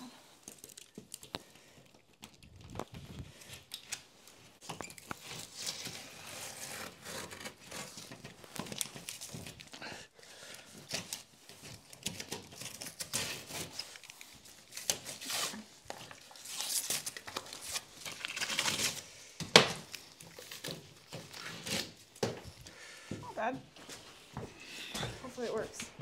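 Drywall being cut by hand: a utility knife drawn through the board's paper face and gypsum in many short, irregular scraping strokes.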